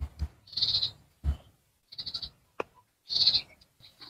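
Three short bleating calls from an animal, spaced about a second apart, with a few soft low thumps near the start.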